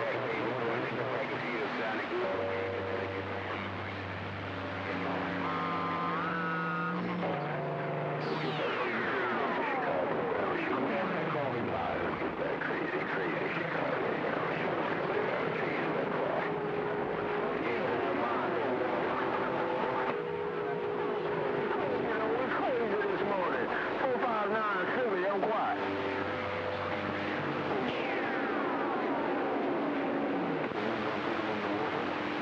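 11-meter CB radio receiving long-distance skip on channel 6: a dense wash of static and overlapping, garbled transmissions, with steady whistle tones coming and going. About eight seconds in, and again near the end, a whistle sweeps steeply down in pitch.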